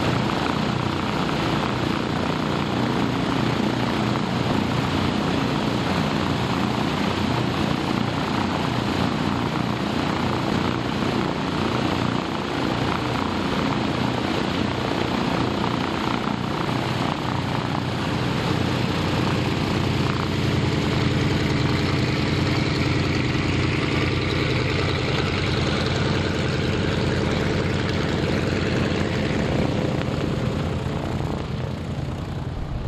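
Twin seven-cylinder radial engines of an Avro Anson running steadily at low power on the ground, propellers turning. The engine note grows a little louder and clearer about two-thirds of the way through as the aircraft begins to turn away to taxi.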